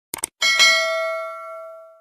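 Subscribe-animation sound effect: two quick mouse clicks, then a bell ding that rings on with several steady tones and fades away.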